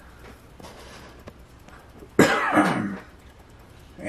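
A person clears their throat with one short cough about halfway through; before and after it there is only faint room noise.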